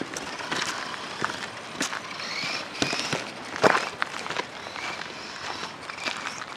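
Traxxas 1/16 Summit VXL RC truck's brushless electric motor whining in short bursts as it drives over gravel, mixed with footsteps crunching on gravel and scattered sharp clicks.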